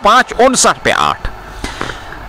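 A man giving cricket commentary for about the first second, then a quieter stretch of faint background noise.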